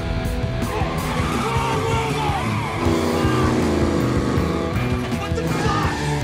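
Guitar-driven soundtrack music over car-chase sounds: engines running and tyres squealing.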